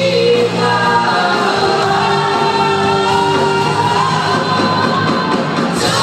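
Live rock band with electric guitars playing under a singer who holds long sustained notes.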